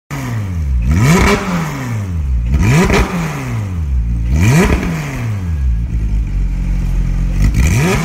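Porsche 911 GT3 flat-six engine revved through a Zen Rage stainless valved exhaust. The pitch shoots up in quick blips and falls back three times, holds steady for a couple of seconds, then rises again near the end.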